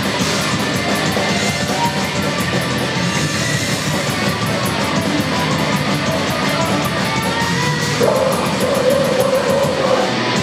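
Live heavy metal band playing at full volume: distorted electric guitars, bass and drum kit with fast, steady cymbal hits. About eight seconds in, a held note comes in and rises above the mix.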